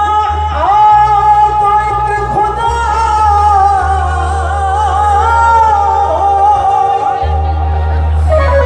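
Male singer performing a devotional bhajan through a microphone, holding long, wavering notes over instrumental accompaniment with a steady low bass.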